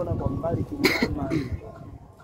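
A person talking close to the microphone, with a short cough about a second in; the talk then dies down near the end.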